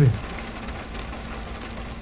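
A steady background ambience bed of even hiss-like noise with a low hum and a faint held tone, and no distinct events standing out.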